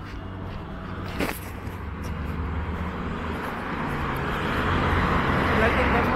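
Road traffic with a vehicle approaching on the adjacent road: a low engine hum under tyre noise that grows steadily louder over the last few seconds. A single brief click sounds about a second in.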